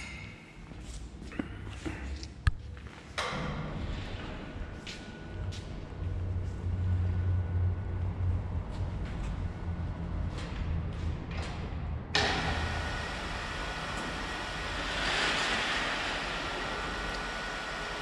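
Overhead crane's electric drive running with a steady low hum and a thin whine while a suspended vacuum lifter is moved and lowered, with a single sharp knock a couple of seconds in. A louder even hiss joins about twelve seconds in.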